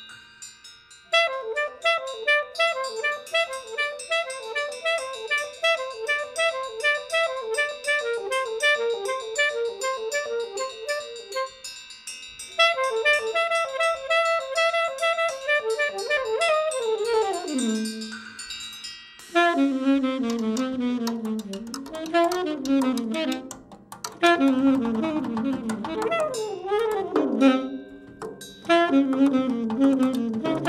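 Live jazz: a saxophone plays a fast repeating figure of short notes, slides down in pitch, and is then joined by a drum kit with cymbals about two-thirds of the way through.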